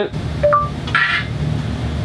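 Short rising two-note chime from the Pioneer AVH-2440NEX head unit as Google Assistant is summoned in Android Auto by pressing and holding the voice button, the tone that signals it is listening. A brief hiss follows, over a steady low hum.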